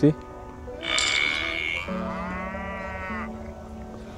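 A cow's moo played from a phone speaker: one long call starting about a second in, rough at first, then a drawn-out moo that rises and falls in pitch, over steady background music.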